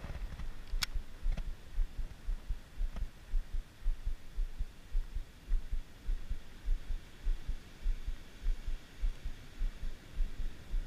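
Lure being retrieved on a Shimano Scorpion BFS baitcasting reel: a sharp click less than a second in as the handle is first turned, then a steady low thumping about two to three times a second as the handle is cranked.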